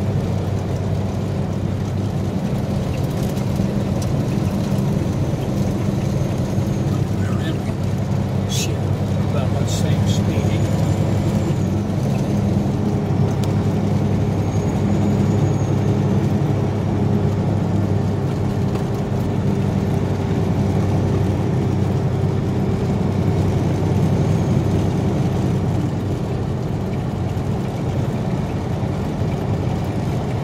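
Semi truck's diesel engine running steadily under way, a constant low drone heard from inside the cab, with a few brief clicks about a third of the way through.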